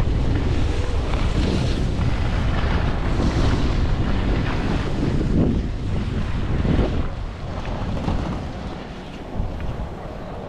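Wind rushing and buffeting on the microphone of a moving skier, with the hiss of skis sliding on snow. It eases off about seven seconds in as the skier slows to a stop.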